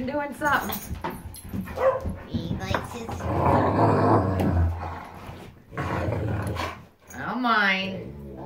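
German Shepherds vocalising in rough play: a high wavering whine just after the start and again near the end, with a low rumbling growl in the middle.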